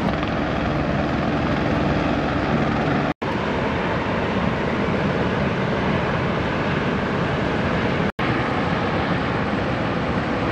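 Steady roar of big breaking surf with wind noise on the microphone, cut to silence for an instant twice, about three seconds in and again about eight seconds in.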